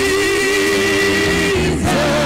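Church worship music with singing: one long note is held for about a second and a half, then shorter notes bend up and down over the accompaniment.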